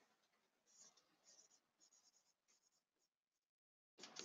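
Very faint scratching of pen strokes as a word is handwritten, in short irregular strokes.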